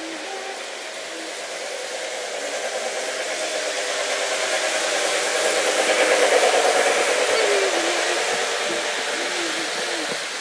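Lionel Polar Express model train running along its track: steady motor and wheel noise that grows louder as the train comes close and passes about six seconds in, then fades as it moves away.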